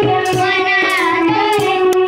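Group of children singing a Marathi welcome song (swagat geet) into microphones, with a steady percussion beat of about three strokes a second.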